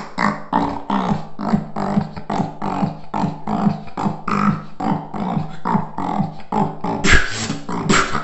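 Solo beatboxing: a steady rhythm of mouth-made percussive hits over hummed bass notes, with a louder, heavier hit about seven seconds in.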